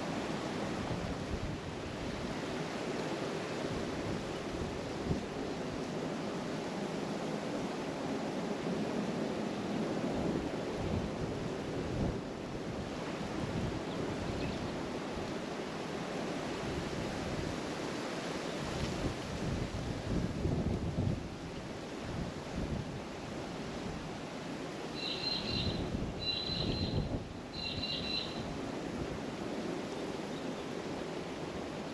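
Wind buffeting an outdoor microphone, a gusty rushing noise that swells and drops. Near the end come three short high-pitched calls, each about half a second long, evenly spaced.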